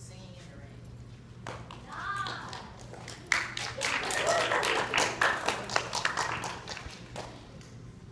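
Audience clapping and calling out: a burst of many hand claps with cheering voices starts about three seconds in and dies away about four seconds later.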